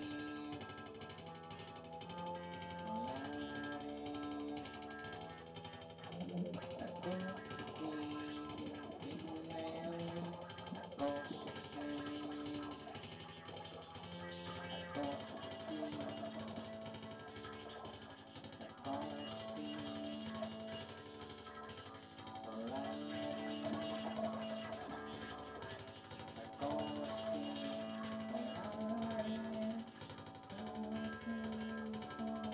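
Live music: an electric guitar playing a slow melody of held notes, many sliding up into pitch.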